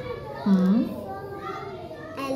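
Speech: voices sounding out Arabic letter names, with one short spoken syllable about half a second in.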